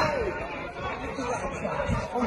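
Indistinct chatter of spectators talking among themselves at a football match, over a low, steady hubbub.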